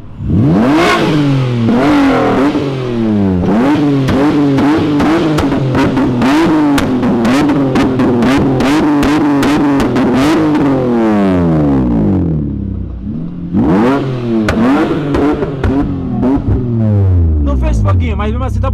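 Mitsubishi Eclipse engine revved hard again and again, the revs rising and falling about twice a second, with sharp pops and cracks from the exhaust. It drops back briefly about twelve seconds in, revs again, and settles toward idle near the end.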